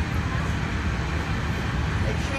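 Steady low rumble of cabin noise inside a Walt Disney World monorail car.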